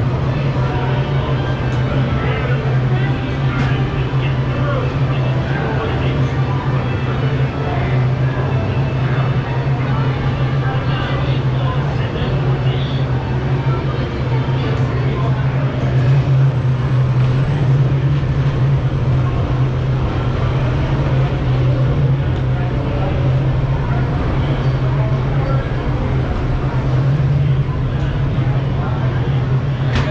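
Indistinct crowd chatter over a steady low hum while the ride car waits in the station.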